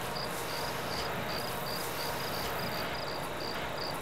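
Crickets chirping steadily, about three short high chirps a second, over a faint steady hiss.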